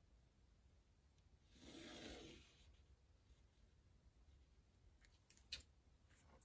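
Near silence: room tone, with one faint soft sound lasting about a second, two seconds in, and a couple of faint ticks near the end.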